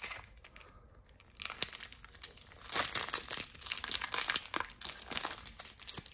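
Foil wrapper of a Topps baseball card retail pack crinkling and tearing as it is ripped open by hand. The crackling begins about a second and a half in and grows denser toward the end.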